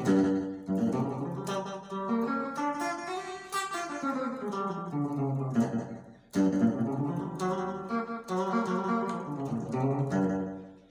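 Electric guitar playing the G blues scale one note at a time, climbing and then coming back down, with a short break about six seconds in before the notes go on.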